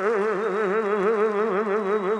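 A single sustained note with a fast, wide vibrato, warbling like a theremin and holding the same pitch throughout.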